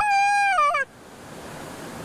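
A man's high-pitched excited whoop, held for just under a second, then wavering and falling away at its end.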